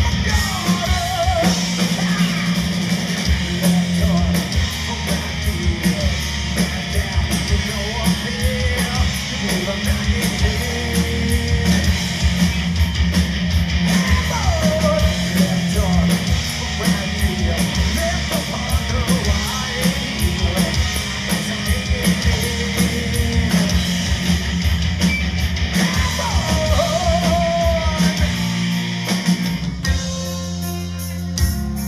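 A heavy metal band playing live: electric guitar, bass and busy drumming under a male singer belting out vocal phrases that come and go.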